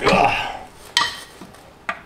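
Steel pry bar working against the transmission and undercarriage metal: a scraping clatter at the start, then one sharp metallic clank about a second in that rings briefly, and a small click near the end.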